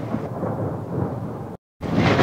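Thunder rumbling with rain, an even low noise, broken by a brief gap of total silence about three quarters of the way through.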